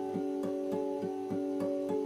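Steel-string acoustic guitar playing an instrumental intro: a repeating pattern of picked notes, about three a second, over ringing chord tones.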